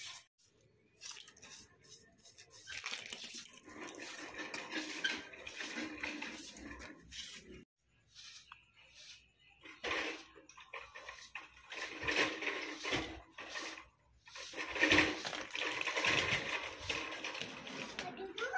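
A short-handled broom with soft blue bristles swishing over a rough concrete floor in uneven runs of strokes, with short pauses between them.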